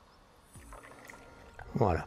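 Washer fluid poured from a plastic jug into a car's windscreen washer reservoir, faint, starting about half a second in. A man's voice sounds briefly near the end.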